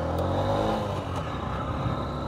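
125 cc motorcycle engine accelerating away from a standstill, its note rising in pitch over the first second and then levelling off.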